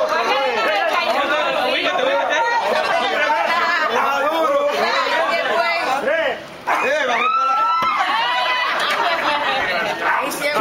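Crowd chatter: many people talking at once, their voices overlapping, with a brief lull about six and a half seconds in.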